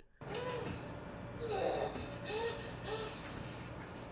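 A woman moaning in pain with breathy gasps, several short rising-and-falling cries, as she goes into labour; played from a TV drama's soundtrack over a low steady hum.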